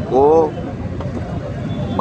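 A man's single spoken word, then a steady low rumble of outdoor background noise under the pause.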